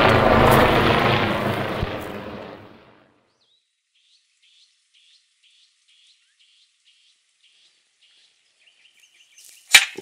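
Helicopter noise fading away over the first three seconds. Then faint bird chirps come about twice a second, followed by a short trill and a single sharp click near the end.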